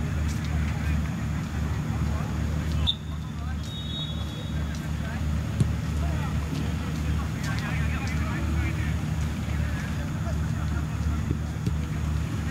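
Football-pitch ambience: a steady low rumble under scattered distant shouts of players. A brief high whistle sounds about three seconds in, and a single sharp knock about halfway through, typical of a ball being kicked.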